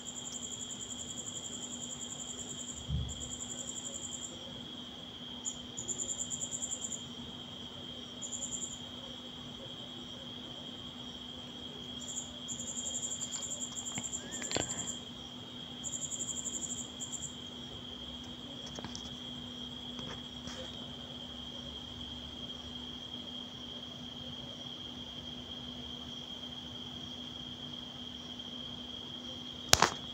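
A cricket chirping in short bouts of a fast, high trill that come and go, over a steady high-pitched whine and a low hum. A few faint clicks fall in the middle.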